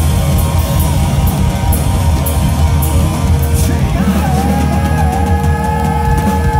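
Live hard rock band playing through a festival PA: electric guitars, bass and drums, with cymbal crashes in the first few seconds. About four seconds in, a long sustained guitar note starts and is held.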